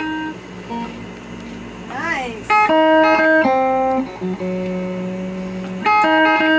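Electric guitar played unaccompanied in loose phrases: sustained single notes and ringing chords, with a note that slides up and down about two seconds in and louder chords from about three seconds in.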